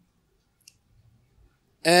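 A near-silent pause with one faint, short click, then near the end a man's voice comes in loudly with a drawn-out 'um' that falls in pitch.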